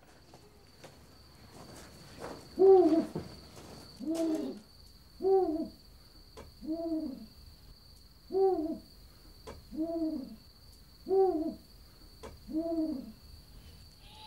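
An owl hooting: a slow series of eight short, deep hoots, each rising and falling slightly, evenly spaced about a second and a half apart, starting a couple of seconds in.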